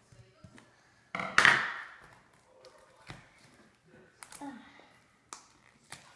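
A plastic toy-packaging wrapper torn open in one sharp rip about a second in, followed by faint rustling and small taps. A child says a brief "Oh" near the end.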